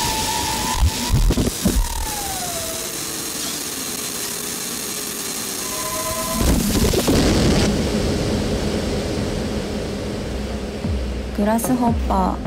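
Electronic music from an IDM mix: sustained synth tones, one tone gliding down in pitch about two seconds in, and a deep bass coming in about six and a half seconds in.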